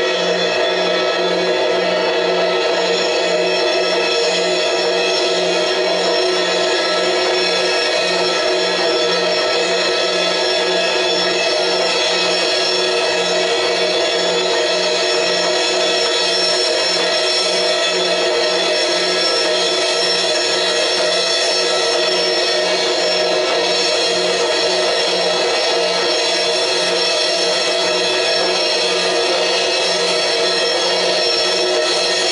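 Sustained experimental drone from cymbals played with soft mallets and guitar electronics: a dense, unchanging wash of many held tones, with one low tone pulsing evenly about twice a second.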